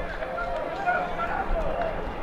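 Stadium ambience at a football match: distant shouting voices carrying across the pitch over a steady background noise.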